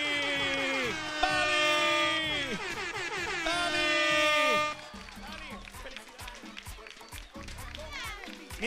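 A man's loud, drawn-out shout in four long held notes, each falling away at its end, announcing a game-show winner. From about five seconds in, a studio audience cheers and claps more softly.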